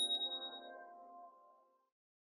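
Outro jingle dying away: a bright electronic ding from the subscribe-button click effect rings out over the music's last sustained chord, and both fade out within about a second and a half.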